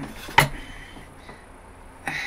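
A single quick puff of breath blown at a wood-burning pen's tip, about half a second in, followed by low background hiss.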